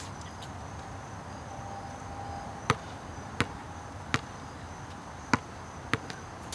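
A basketball bouncing on a hard outdoor court: four separate dribbles, starting a little before halfway through, with a steady high insect chirr underneath.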